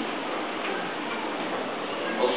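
A pause in the speech filled by a steady crackling hiss of background noise, with no single event standing out.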